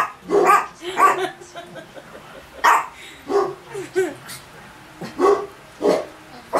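A dog barking: about eight short barks in irregular bursts, three in quick succession at the start, then scattered pairs.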